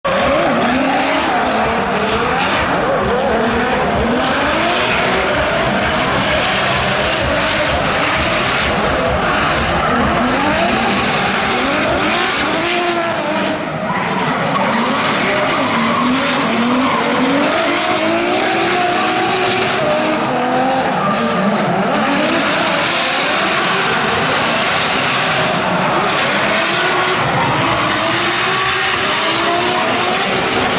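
Two drift cars, a Nissan and a BMW, running in tandem: their engines rev up and down again and again at high rpm, with continuous tyre squeal and skidding.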